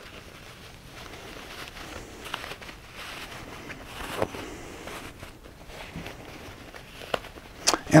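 Quiet rustling and scrunching of quilting cotton and batting as a sewn pouch is turned right side out by hand, with a few faint clicks.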